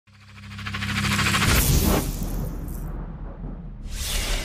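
Intro sound effects: a fast-pulsing riser swells up over the first second and a half into a deep boom that rumbles away. A fresh whoosh starts just before the end.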